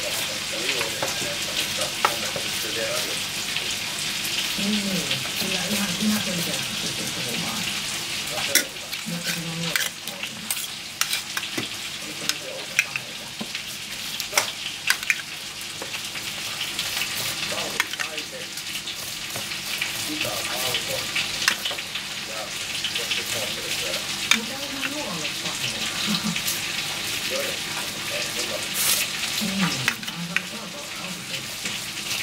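Pastry brush spreading oil over dimpled bread dough, a soft wet swishing that swells and fades with the strokes. Scattered small clicks come as the brush is dipped into and tapped against a small steel cup.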